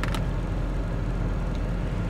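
Steady low hum of a vehicle idling, heard from inside its cabin.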